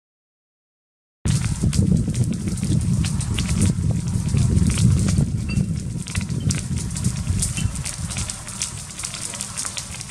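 Wildfire burning through trees and undergrowth, starting suddenly about a second in: a steady low rumble with dense crackling and popping.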